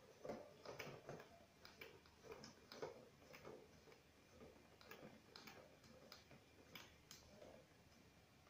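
Faint, irregular clicks, about two a second, as a flexible metal gooseneck faucet is pushed into and turned in its socket on top of a water ionizer.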